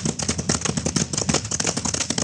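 Radio-drama sound effect of several horses galloping: a fast, dense clatter of hoofbeats.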